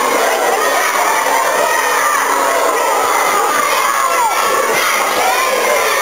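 A crowd of schoolchildren shouting and cheering together, a steady, loud din of many overlapping voices.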